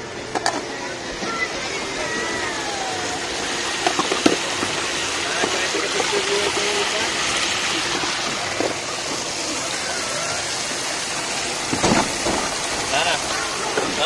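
Steady rush and splash of water churning through a shallow play water table, with a couple of sharp knocks along the way.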